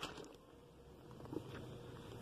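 Faint rustling of a glossy paper catalogue being handled, its pages flipped over, with a light click right at the start.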